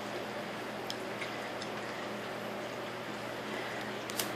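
Faint sounds of a litter of four-week-old boxer puppies eating soaked kibble from metal pans: soft wet chewing with a few light ticks about a second in, over a steady low hum.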